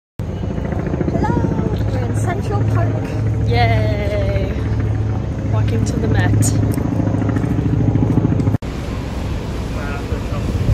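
Steady low rumble of outdoor city noise, with people talking over it. The sound cuts out for an instant near the end.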